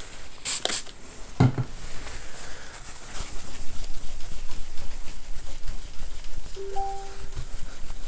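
Two quick sprays from a Windex trigger spray bottle, a thump, then a cloth rubbing over a MacBook's glass screen with a brief squeak near the end.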